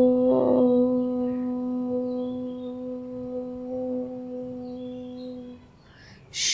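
A woman's voice chanting a long 'Om', held on one steady pitch and slowly fading away about five and a half seconds in.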